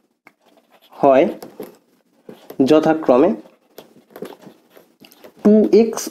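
A man's voice speaking in short phrases, with faint scratching and tapping of a marker on a whiteboard in the pauses between.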